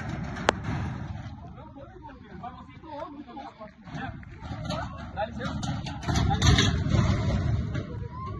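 Indistinct, broken-up voices of bystanders during a struggle, with a sharp click about half a second in. A louder low rumbling noise on the microphone comes in around six seconds in.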